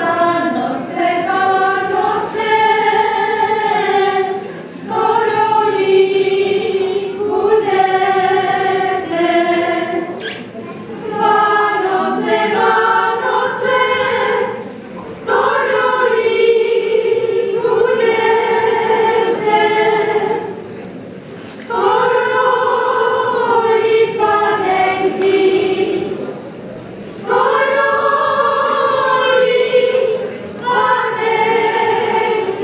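A group of women singing a folk song together unaccompanied, in sung phrases of about five seconds with short breaks for breath between them.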